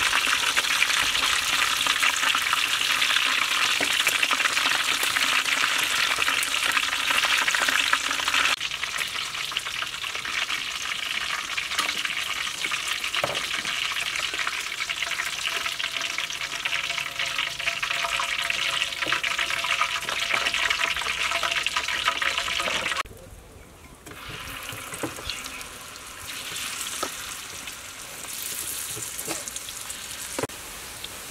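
Battered chicken wings deep-frying in a wok of hot oil: a dense, steady sizzle and bubbling. About three-quarters of the way through it suddenly turns quieter, and a few light clicks sound over it.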